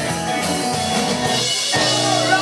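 Live rock and roll band playing electric guitars and a drum kit, with a short break in the low end about three-quarters of the way through.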